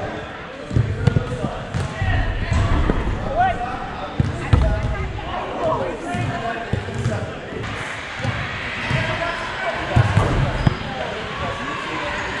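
Indoor soccer on artificial turf: repeated sharp thuds of the ball being kicked and hitting the turf and boards, mixed with players shouting to each other during an attack on goal.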